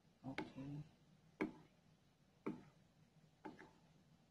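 Faint, evenly spaced ticks about once a second, the steady beat of a clock ticking in a quiet room.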